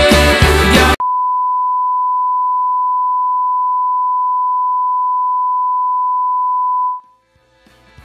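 Folk-rock music cuts off abruptly about a second in, and a steady single-pitch broadcast test tone, the kind played with colour bars, holds for about six seconds. The tone stops, and music fades back in near the end.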